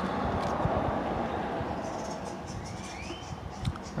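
Wind buffeting the microphone outdoors: a steady, rushing rumble that slowly fades, with a faint rising whine about three seconds in.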